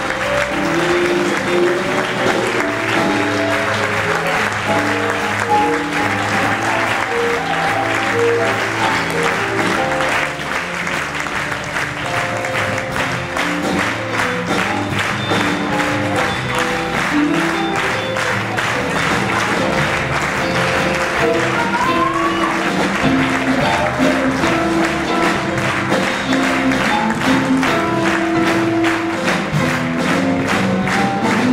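Live band music playing over sustained audience applause.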